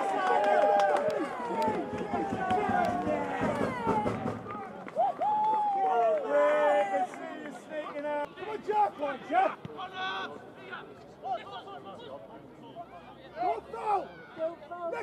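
Small football crowd cheering and shouting just after a goal, many voices overlapping at first, then thinning to scattered individual shouts about halfway through.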